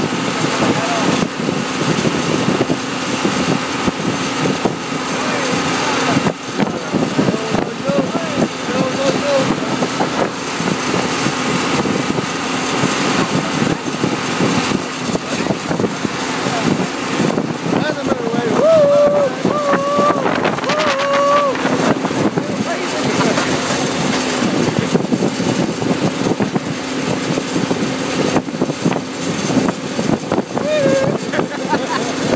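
John Deere 2030 tractor engine running at a steady pace while towing a trailer, with wind buffeting the microphone. Voices ride on top, with a drawn-out call about two-thirds of the way through.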